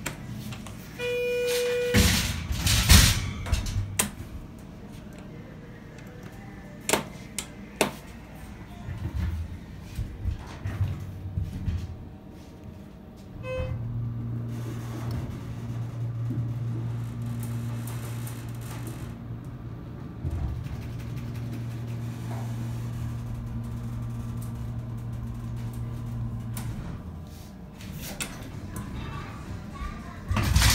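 Schindler 330A hydraulic elevator: a short beep from the car button, a few knocks as the door closes, then, after a short chime at about 13 s, the hydraulic pump motor hums steadily and low for about thirteen seconds as the car goes up, stopping near the end. Its upward starts are ones the owner finds rough every time.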